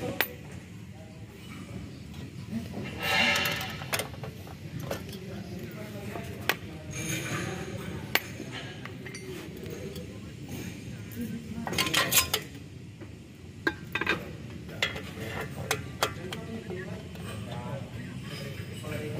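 Irregular metal clinks and scrapes of pliers and brake parts as a car's rear drum brake shoes, springs and pins are worked off the backing plate, with louder rattling bursts about three seconds in and again about twelve seconds in.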